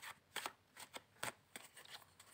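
A deck of tarot cards being handled and shuffled: a few faint, short card snaps and rustles at uneven intervals.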